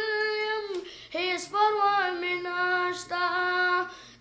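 A boy singing an Islamic devotional poem (nazm) unaccompanied, with long held notes that bend slowly in pitch. There is a brief breath break about a second in.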